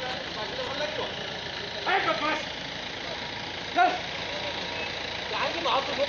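Voices at a street police checkpoint, calling out in short loud utterances about two seconds in, about four seconds in and again near the end, over steady outdoor street noise.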